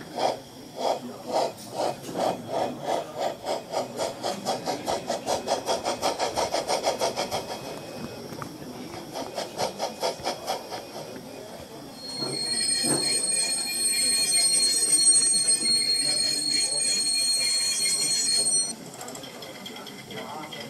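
Sound module of a Gauge 1 model of the Prussian T 9.3 (class 91.3-18) tank locomotive, playing steam-engine chuffs through its loudspeaker. The chuffs quicken to about four or five a second, then slow to about two a second. About twelve seconds in, a long high brake squeal starts, holds steady and cuts off suddenly near the end.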